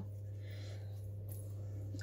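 Room tone: a steady low hum, with a faint soft hiss for about half a second near the start.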